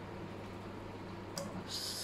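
Mostly a quiet room with a steady low hum while a person drinks from a plastic water bottle. About a second and a half in comes a single click, then a short breathy rush of air as the drinking ends.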